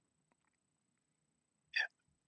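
Near silence, broken once near the end by a brief breathy sound from a man's mouth or nose.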